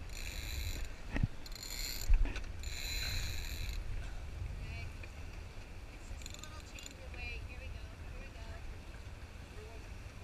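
A sailboat's sheet winch ratchets in several short spells of rapid clicking as the sail is trimmed in, over a steady low wind rumble. A sharp knock comes about a second in, and a louder thump just after two seconds is the loudest sound.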